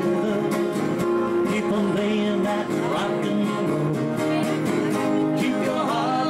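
Live band music led by a strummed acoustic guitar, with a steady beat.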